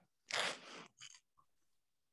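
A short burst of rustling noise, then a brief hiss, picked up on a video-call participant's microphone.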